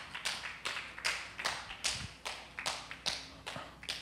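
Faint rhythmic hand clapping, a steady string of sharp claps about three a second.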